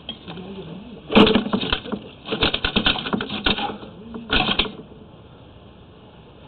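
Sewer inspection camera being pushed up a drain line: its push cable and camera head rattle and click in three bursts of rapid clicks, the middle one the longest.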